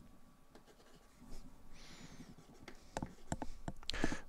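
Pen writing on paper: faint scratching strokes starting about a second in, with a few short sharp ticks near the end.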